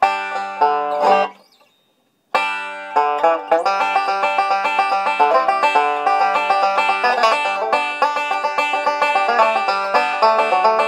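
Gibson five-string banjo with a Huber bridge: one ringing chord for about a second and a half, a short gap, then fast, continuous bluegrass picking.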